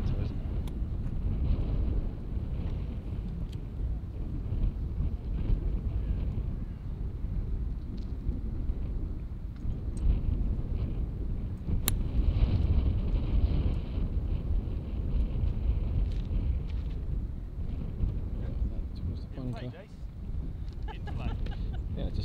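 Wind buffeting the microphone throughout, with one sharp, short crack about twelve seconds in as a golf club strikes the ball off the tee.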